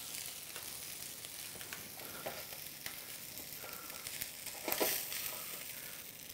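Tilapia fillet sizzling on the hot ribbed plate of a T-fal OptiGrill electric contact grill: a steady faint hiss with small crackles. Near the end a brief louder scrape as a plastic spatula slides under the fillet.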